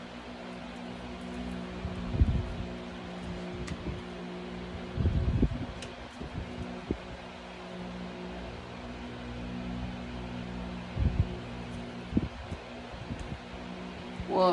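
Steady low hum with a faint hiss, like a running fan in a small room, broken by a few short low thumps and soft handling sounds while a deck of cards is held and shuffled, at about two, five, eleven and twelve seconds in.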